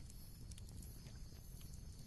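Faint steady background bed: a low rumble with scattered soft clicks.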